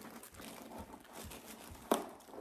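Soft rustling and crinkling of the paper stuffing inside a new sneaker as fingers work into the shoe, with a sharp click near the end.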